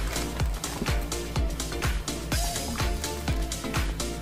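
Upbeat background music with a steady dance beat, the kick drum hitting about twice a second under a synth melody.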